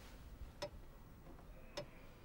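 Clock ticking slowly, about one tick a second: two sharp ticks, each with a short ring, in the two seconds.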